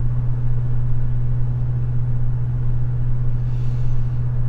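Ford pickup's exhaust with an aftermarket Roush muffler and an added resonator, heard from inside the cab at steady highway speed as a loud, unchanging low hum. The muffler does little muffling, so the exhaust still builds pressure in the cabin.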